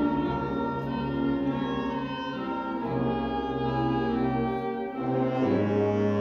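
Wind ensemble playing held woodwind and brass chords, moving to a fuller, lower chord about five and a half seconds in.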